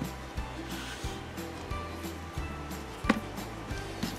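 Background music with a soft, steady beat, and a single sharp knock about three seconds in as a hot glue gun is set down on a foam-covered cardboard base.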